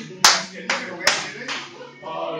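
Line dancers' hand claps in time with the dance: four sharp claps a little under half a second apart.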